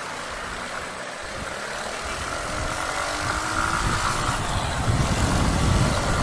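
Keeway Cafe Racer 152's single-cylinder engine pulling away and speeding up, its note rising and growing steadily louder, with wind rush on the microphone.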